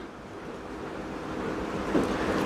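Steady rushing background noise with no distinct events, swelling gradually louder.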